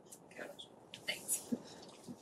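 Faint, indistinct talking and whispering from several people in a room, in short scattered snatches.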